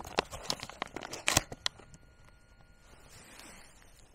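Foil-lined food pouch crinkling as it is handled, a quick run of sharp crackles in the first second and a half.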